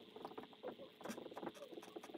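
Dry-erase marker squeaking and scratching on a whiteboard in quick, short strokes as handwriting is written.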